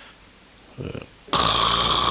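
A man mimicking a loud snore with his voice, into a microphone. A short soft breath comes just before the middle, then a loud, rasping snore from a little past halfway.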